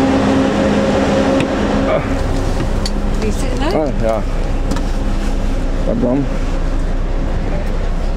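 A coach bus's engine idling at the stand: a steady hum with a few held low tones that fade about two seconds in, with brief voices over it.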